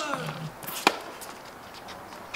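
A short falling voice trails off at the start, then a single sharp tennis ball hit by a racket rings out about a second in.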